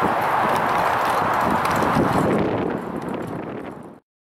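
Strong wind buffeting the camera microphone: a loud rushing noise with crackling gusts that fades out near the end.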